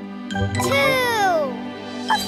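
Light children's background music. A short chime sounds, then a high cartoon-baby voice gives a long, falling 'ohh' that slides down in pitch over about a second.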